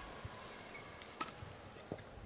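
Badminton rally: a few sharp racket strikes on the shuttlecock, the loudest just past the middle and another near the end, with short squeaks of court shoes and soft footfalls on the court.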